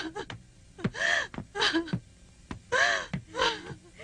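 A woman's voice gasping and moaning: high-pitched arching cries that come in pairs, with short pauses between them.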